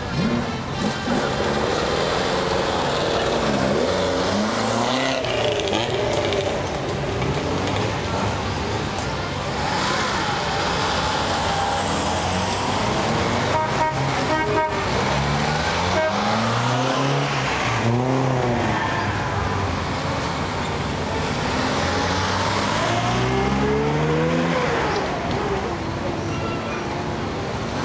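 Classic sports car engines accelerating away one after another, each rising in pitch as it pulls off and revs through the gears, with a fresh car every few seconds.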